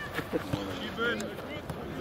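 Faint, indistinct shouts of players calling across a football pitch, with a few short knocks mixed in.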